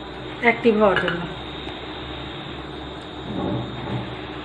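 A ceramic saucer is handled and set over a cup as a lid, with a light clink of china near the end. There is a short spoken phrase in the first second.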